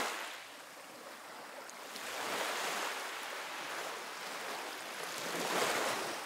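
Small waves washing onto a sandy shore, a soft hiss of surf that grows louder about two seconds in.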